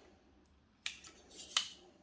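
Two sharp metal clicks, about three-quarters of a second apart, as the blade of a GM multifunction angle gauge is swung and clicked into position against its body.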